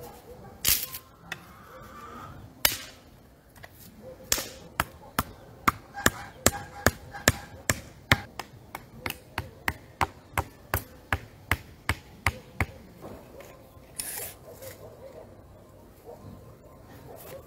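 Hammer blows on wood: a couple of single knocks, then a steady run of about two and a half blows a second for some eight seconds, as wooden stakes and edging slats are fixed along a garden bed. A brief scraping rustle follows near the end.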